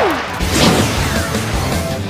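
Action background music with animated fight sound effects: two falling whooshes, one at the start and one about half a second in, and impact hits as the clones attack.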